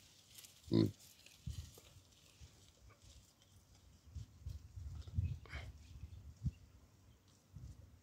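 A hamadryas baboon gives one short, loud grunt about a second in, with a fainter call around five and a half seconds. Soft low thumps come and go in between.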